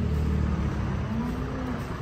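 A farm vehicle's diesel engine running steadily nearby, a low rumble that eases slightly toward the end.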